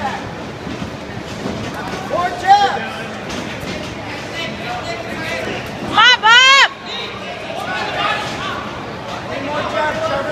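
Ringside fight crowd: a steady hubbub of voices with scattered shouts, and one loud, high yell close to the microphone about six seconds in, lasting under a second.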